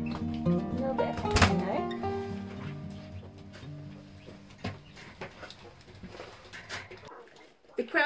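Background acoustic guitar music fading out gradually over several seconds, with a brief call-like sound about a second and a half in.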